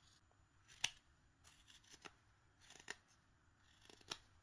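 Faint, sparse snicks of a Mora 120 carving knife slicing small V cuts into a wooden figure, with a few short clicks and the sharpest about a second in.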